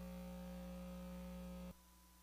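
Faint, steady electrical mains hum from the recording chain, one low buzz with many overtones, cutting off suddenly near the end.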